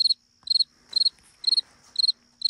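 Cricket chirping: an even run of short, high chirps, about two a second.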